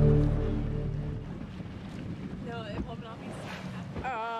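Soft background music fading out over about the first second, giving way to wind buffeting the microphone over sea and boat noise on open water. About two and a half seconds in there is a brief wavering, voice-like sound.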